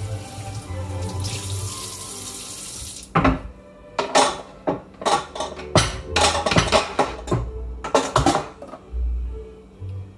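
Kitchen tap running onto a wooden cutting board in the sink, shutting off about three seconds in; then a string of clatters and knocks as dishes and kitchenware are handled and set down.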